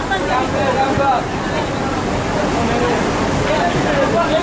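Background voices talking over a steady, noisy din, with no clear words.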